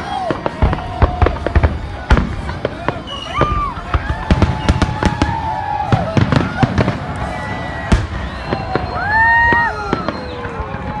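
Fireworks display: aerial shells going off in a run of sharp bangs and crackles, with spectators' voices calling out over them, loudest near the end.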